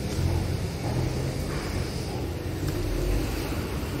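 Outdoor street ambience with a low, uneven rumble.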